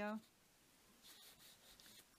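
Faint scratchy rubbing of a small paintbrush on paper, strongest about a second in.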